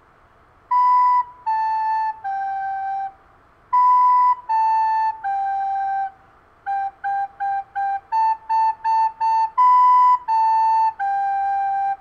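Plastic soprano recorder playing a simple three-note tune, B-A-G, B-A-G, then four quick Gs, four quick As, and B-A-G again. Each note is tongued separately, so the notes are cleanly detached.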